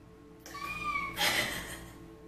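A woman's high-pitched squeal of delight, held about half a second, followed by a breathy burst of laughter, over faint background music.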